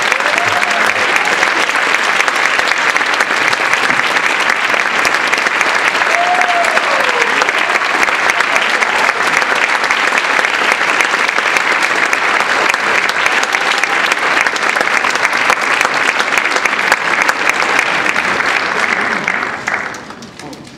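Audience applauding, dense and steady, dying away near the end.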